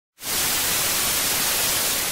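Television static: a steady hiss of white noise that starts suddenly just after the beginning.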